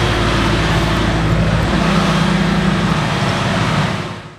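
An engine running steadily with a loud, even hiss over it.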